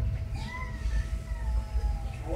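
British Shorthair kitten giving one long, thin meow that starts about half a second in, rises slightly and then slowly falls, over a low rumble.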